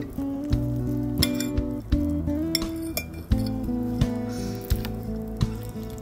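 Background music with held notes changing step by step, over several sharp clinks of eating utensils against a dish.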